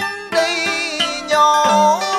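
Southern Vietnamese đờn ca tài tử music: plucked string instruments, including the đàn kìm moon lute and the đàn tranh zither, play a melody of wavering, bending notes, with one note held near the end.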